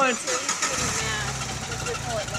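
Jeep Wrangler engine starting about half a second in, then running steadily with a low rumble.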